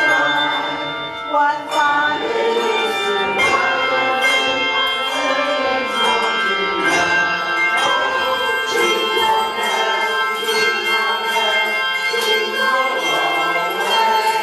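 A handbell choir playing a tune: many tuned handbells rung one after another, their ringing tones overlapping and sustaining.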